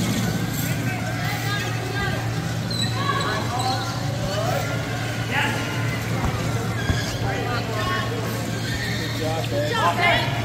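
Power wheelchair tyres squeaking on a hardwood gym floor during play: short, high gliding squeals come again and again over a steady low hum.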